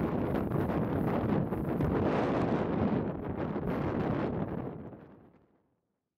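Strong blizzard wind blowing over the microphone, a steady rushing noise that fades out to silence near the end.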